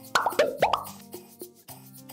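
A quick run of bubbly, popping cartoon sound effects in the first second, over light background music.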